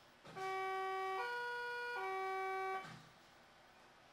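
Berlin S-Bahn train's door-closing warning signal: an electronic tone in three steps, low, high, then low again, lasting about two and a half seconds, sounding before the doors shut.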